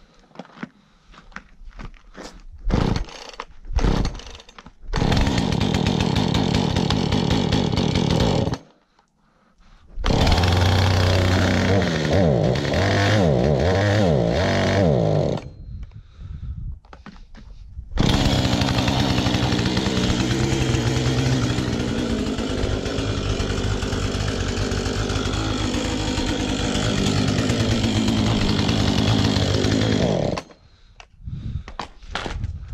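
Husqvarna two-stroke chainsaw being pull-started: a few short pulls, then it catches and runs, stops twice and is pulled again, revving up and down after the second start. From about 18 seconds in it keeps running steadily.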